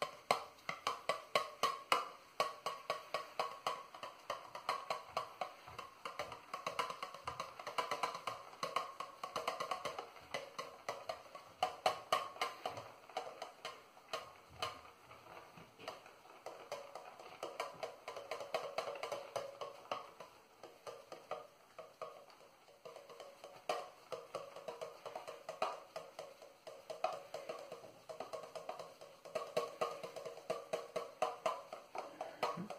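A shaving brush swirled quickly on a puck of shaving soap to load it, a fast, continuous wet clicking.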